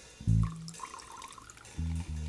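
A thin stream of chilled water trickling from a glass pitcher over a sugar cube into a glass of absinthe. Background music with plucked bass notes plays over it, and these are the loudest sound.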